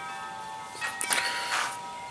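Wind chimes ringing, several clear tones held together and fading slowly, with two short soft hisses about a second in.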